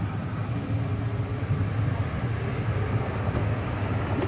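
ÖBB class 5047 diesel railcar approaching, its engine a steady low drone.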